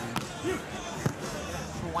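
Two sharp hand-on-ball smacks of a beach volleyball, about a second apart: a jump serve struck and then received with a pass.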